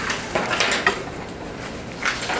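Papers rustling and small objects knocking on a tabletop, in a few short bursts in the first second, then quieter.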